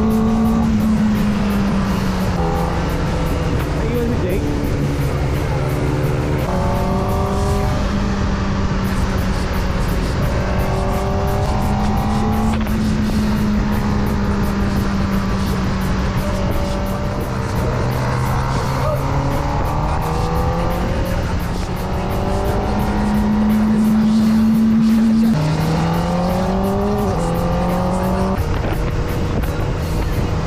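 Kawasaki ZX-4RR's 399 cc inline-four engine pulling hard through the gears. Its pitch climbs and drops back at each upshift, several times over, under a rush of wind noise.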